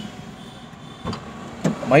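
Low, steady background rumble of vehicles and street traffic heard from inside a car cabin, with one faint click about a second in.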